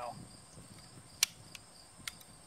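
A single sharp metallic click about a second in, with a couple of faint ticks after it, from the slide and frame of a Zastava M57 pistol being handled during reassembly. Crickets chirp steadily in the background.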